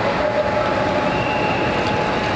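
Steady, loud rushing background noise with a few faint held tones and no clear speech.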